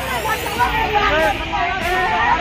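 Several women talking and calling out over one another in a crowd, their voices overlapping.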